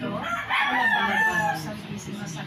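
A rooster crowing once, loudly: a single drawn-out call that starts about half a second in and lasts about a second.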